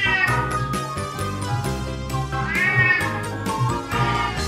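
A domestic cat meowing twice, a short call at the start and a longer one near the end, over background music.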